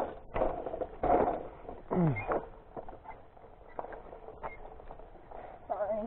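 Diamondback Edgewood hybrid bike rattling and knocking in irregular bumps as it rolls over a rough dirt trail. A short sound falls steeply in pitch about two seconds in.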